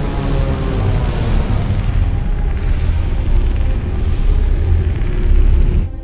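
Film sound effect of a science-fiction hovercraft's electromagnetic hover pads: a loud, dense rumble with a heavy low end, mixed with dramatic score. It swells and cuts off suddenly near the end.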